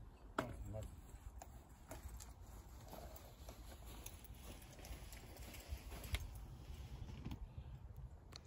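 A golf stand bag being picked up and carried off: a sharp click about half a second in, then scattered light clicks of the clubs knocking in the bag, over a steady low rumble.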